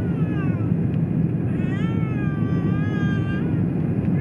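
Steady rumble of an airliner cabin during the descent, with a young child's high-pitched whining cries over it: a short one fading in the first half-second and a longer, wavering one from about a second and a half to three and a half seconds in.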